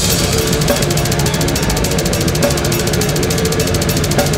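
Death metal band playing live at full volume: heavily distorted electric guitars holding a riff over drums, with a very fast, even run of cymbal strokes.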